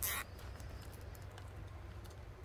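Close handling of plastic zip ties and burlap on a wire wreath frame: a brief rustle at the start, then a few faint light clicks over a low hum.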